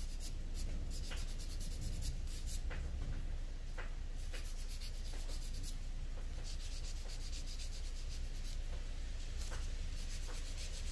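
Emery board filing a man's fingernails: quick, short scratchy strokes that come in fast runs with brief pauses between them.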